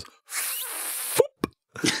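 A man's mouth-made sound effect imitating jellied cranberry sauce sliding out of its can: a noisy whoosh of about a second that ends in a short plop, followed by a small click.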